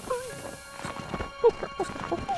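Short, wavering squeaks and chitters from an animated cartoon squirrel character, over held music notes, with a sharp click about one and a half seconds in.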